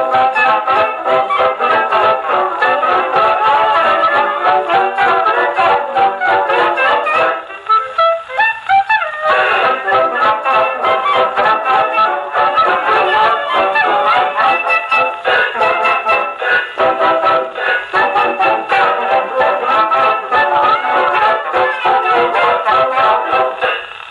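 A 78 rpm record playing on a gramophone: a 1920s dance band's instrumental fox trot/Charleston chorus led by brass, with the thin, top-cut sound of an old record. About eight seconds in the band drops back for a short break with a rising glide before the full band comes back in.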